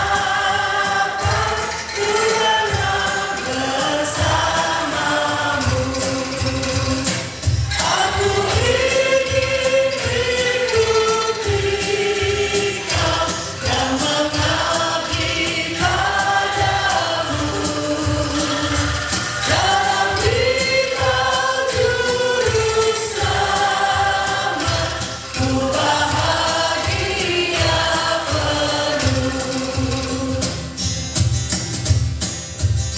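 Several women's voices singing a hymn melody through microphones, accompanied by an Indonesian angklung and bamboo instrument ensemble with a regular low beat underneath. The singing runs in phrases with short breaths between them.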